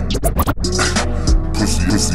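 Slowed, chopped-and-screwed hip-hop beat, broken in its first half-second by a quick run of scratch-like stutters before the beat carries on.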